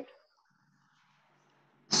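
Near silence on a video call: a voice trails off at the start, nothing but a faint hiss for about a second and a half, then a woman begins speaking just before the end.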